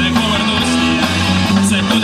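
Live rock band playing at full volume: electric guitars and bass guitar over a drum kit, with cymbal hits cutting through.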